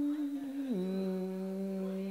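A man's singing voice holding one long vọng cổ note, sliding down to a lower pitch a little under a second in and holding it steady.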